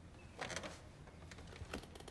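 Quiet room tone with a brief rustle about half a second in and a few faint, scattered light clicks.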